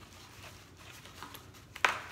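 Cardboard shipping box being handled and folded, with faint rustling and one sharp click near the end.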